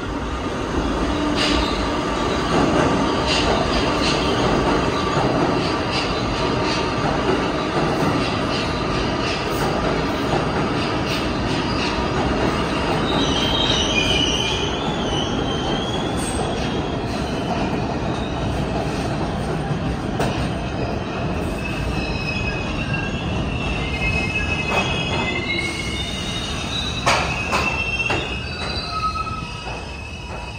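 New York City Subway R160 trains running through the station: a steady rumble of steel wheels on rail, with repeated clicks as the wheels cross rail joints. High-pitched wheel squeal comes and goes through the second half as a train runs along the platform.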